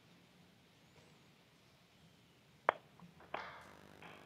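Faint room tone, then computer mouse clicks near the end: one sharp click, then a second with a short ringing tail, as a right-click menu is opened on the screen share.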